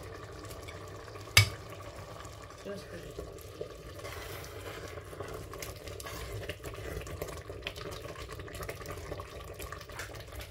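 A pot of ukwa simmering on the hob with a steady low hiss, and one sharp knock against the steel pot about a second and a half in. From about three seconds on, a wooden spoon stirs through the thick, wet mixture with small irregular scrapes.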